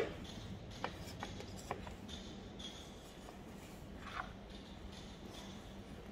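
Faint scraping of a spatula and scraper spreading and gathering melted chocolate on a slab, with a few light clicks, during a last pass of tabling chocolate brought to tempering temperature.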